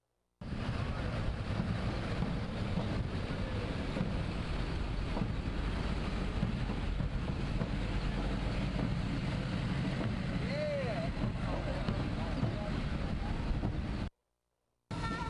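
Wind buffeting the microphone in a steady low rumble, with a pickup truck rolling slowly past and faint voices.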